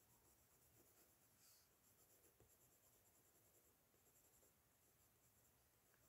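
Near silence, with faint scratching of a coloured pencil shading on paper.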